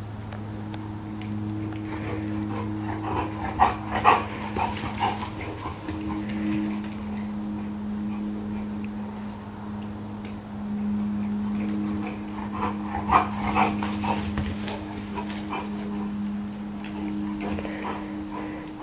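A dog whimpering in short bursts, in two spells (about four seconds in and again about thirteen seconds in), over a steady low hum.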